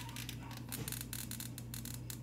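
Paper and card packaging handled by fingers: a quick run of crinkles and rustles, over a steady low hum.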